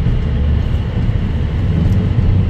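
Steady low road rumble inside a car cruising at highway speed.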